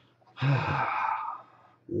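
A man's heavy sigh: one breathy exhale about a second long, with a slight voiced start.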